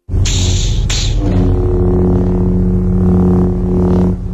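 Electronic logo sting: two quick whooshes in the first second, then a deep sustained synth drone over a low rumble.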